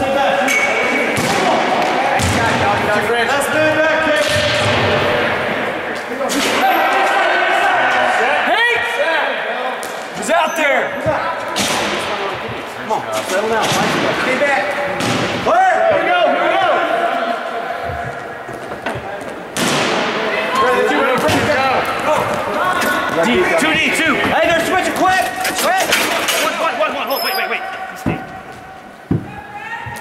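Broomball game in an indoor ice rink: players and bench voices shouting over one another, with frequent sharp knocks and slams from brooms and the ball striking the ice and boards, echoing in the arena.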